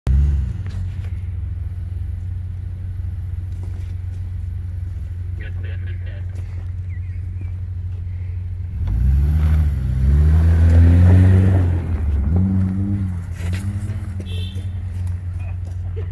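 Subaru Crosstrek's flat-four boxer engine running steadily, then revving up and down several times from about nine seconds in, loudest a couple of seconds later, as the car tries to drive out of deep snow.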